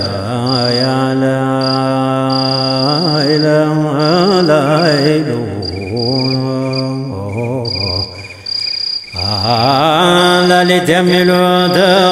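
Male voice chanting a menzuma, Ethiopian Islamic devotional song, in long drawn-out notes with wavering ornaments, breaking off briefly about two-thirds of the way through. A high, steady tone cuts in and out behind the voice.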